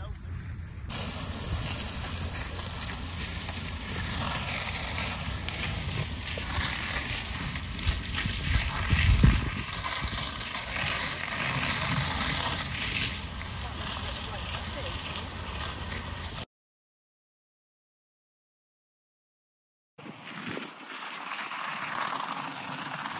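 A fire hose spraying water onto a burning tractor and baler: a steady, loud rushing hiss with wind rumbling on the microphone. It cuts off suddenly about three-quarters of the way through.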